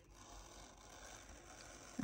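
Faint, steady scratching of a cutter being drawn across the plastic cover film of a diamond-painting canvas.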